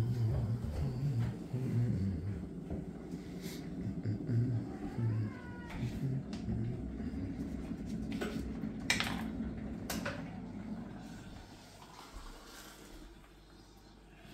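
Domestic cat being stroked, giving a short meow that rises and falls about six seconds in. A couple of sharp clicks follow a few seconds later.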